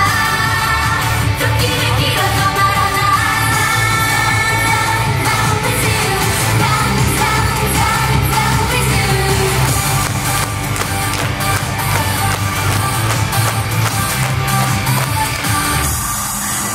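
Live J-pop performance: a girl group sings over upbeat pop backing music with a steady dance beat.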